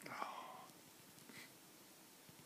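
A brief whispered voice at the start, followed by faint room hiss.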